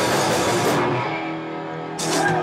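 Punk rock band playing live with electric guitar. About a second in, the drums and cymbals drop out and a single electric guitar chord is left ringing.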